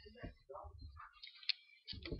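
Faint ticks and small clicks, with one sharper click about one and a half seconds in.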